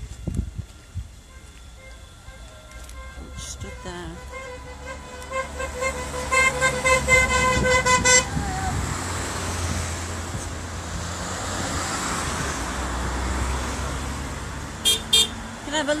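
A vehicle horn tooting in a quick string of short beeps that grow louder, then a vehicle passing close by, its road noise swelling and fading away.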